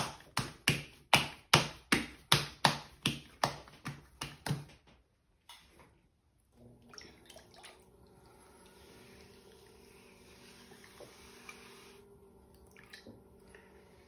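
Wet hands slapping a mound of wet clay on a stationary potter's wheel head, about a dozen sharp slaps roughly three a second. The slaps stop about five seconds in, and after a short pause the electric potter's wheel starts and runs with a faint steady hum.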